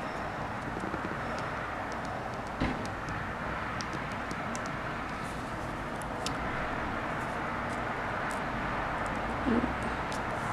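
Steady background hiss with scattered faint, light clicks of a diamond-painting drill pen setting resin drills onto the canvas, and two soft thumps, one about two and a half seconds in and one near the end.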